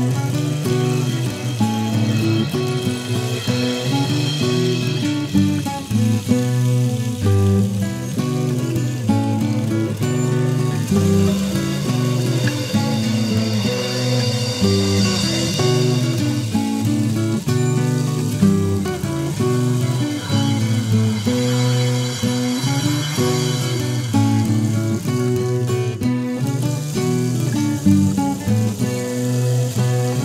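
Instrumental neofolk music led by plucked strings, guitar among them, playing a steady run of picked notes with no singing.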